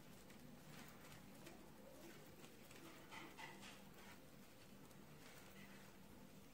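Near silence: faint, scattered ticks and scratches of metal knitting needles working stitches in yarn, over a faint steady low hum.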